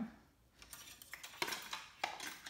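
A few light clicks and clinks of small hard objects being handled, as separate taps after a brief hush.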